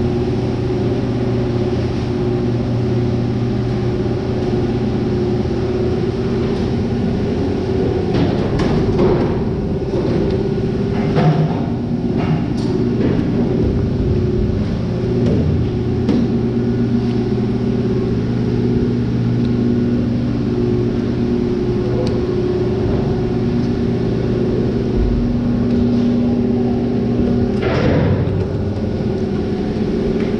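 Steady machinery running in a large room, a constant hum with several low tones. Scattered knocks and thuds, clustered about a third of the way in and again near the end, as heavy salmon are handled on a stainless steel sorting table.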